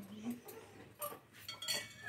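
A spoon clinking lightly against dishes a few times as food is served out.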